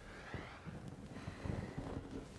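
Faint low rumble with soft rustling and a few dull bumps of clothing and the padded adjusting table as the patient is positioned, with no joint crack.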